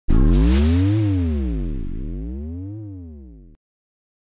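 Electronic intro sting: a loud synthesizer hit that sweeps up and down in pitch twice while fading away, then cuts off suddenly.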